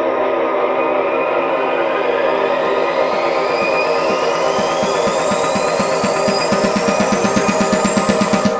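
Tech house track in a build-up: sustained electronic pads under a synth sweep that rises steadily in pitch. In the second half a fast run of repeated drum hits grows louder toward the end.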